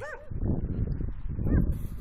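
A dog barking at a passer-by: a short bark at the start and another about one and a half seconds in, territorial warning barks.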